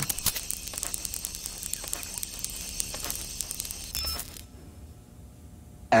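Dense crackling noise full of rapid clicks, an electronic texture from the performance's soundtrack, opening with a sharp click and cutting off abruptly about four and a half seconds in, leaving only a faint hum.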